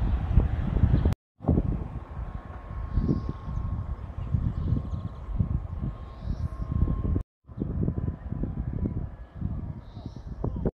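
Wind buffeting the microphone in uneven low rumbles, cut to silence twice for a moment.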